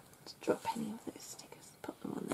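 A woman murmuring under her breath: a few soft, whispered syllables about half a second in, with a faint click or two near the end.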